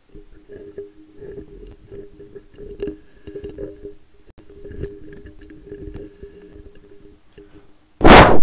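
Handling noise from a microphone being turned on its stand: irregular rubbing and knocking bumps picked up directly by the mic, over a faint steady hum.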